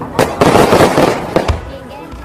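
Aerial fireworks bursting: sharp bangs near the start and a dense crackle through the first second, another sharp bang about one and a half seconds in, then fading.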